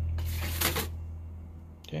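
A folded newspaper flyer rustling and sliding as it is dropped into a plastic sorting bin, lasting under a second. A low steady hum fades away underneath it.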